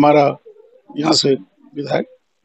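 A man speaking Hindi in short phrases with pauses between them.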